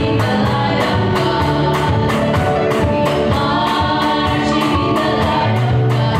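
Three girls singing a gospel song together into microphones, over accompaniment with a steady beat.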